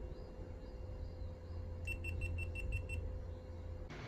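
GoPro Hero 8 action camera beeping: a quick run of about six short, high beeps, about five a second, over a low background hum.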